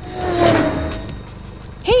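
A car zoom sound, swelling and fading over about a second with a slightly falling engine hum, for the toy Cat Car rushing in.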